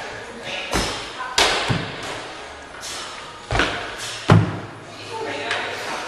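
Feet landing with heavy thuds on a wooden plyo box and the gym floor during box jumps. There are several irregular thuds, the loudest about four seconds in.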